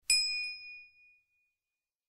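A single bright bell ding, the notification-bell sound effect of a subscribe-button animation. It strikes once and rings out, fading over about a second and a half.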